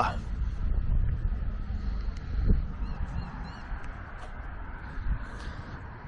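Outdoor background noise: a steady low rumble of wind and handling on the microphone as the camera is carried, with a single soft knock about two and a half seconds in and a few faint high chirps.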